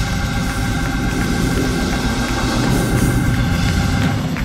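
Live church band playing: drum kit with cymbals ringing over a held keyboard chord.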